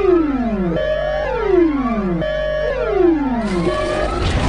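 Synthesized electronic music cue: a held tone followed by sweeping falling and rising pitch glides, repeating about every second and a half.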